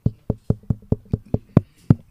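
A microphone being tapped with a finger, about nine quick dull thumps at four to five a second, the last two the hardest. It is a check of whether the mic is live after the sound dropped out.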